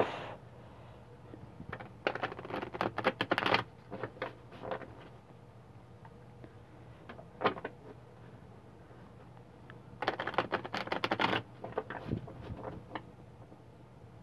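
Tarot cards being riffle-shuffled by hand: two bursts of rapid card clicks, about two seconds in and again about ten seconds in, each lasting about a second and a half, with a few lone card taps between.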